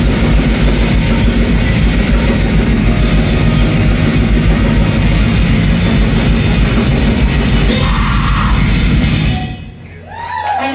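Live rock band playing loud, heavy music with distorted guitars and drums. The music stops near the end and rings out briefly.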